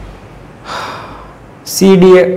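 A man's short audible breath, breathy and without pitch, about halfway through. Near the end his voice starts loudly.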